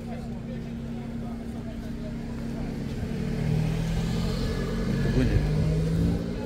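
A motor vehicle's engine running close by, its hum growing louder about halfway through, over the chatter of a crowd.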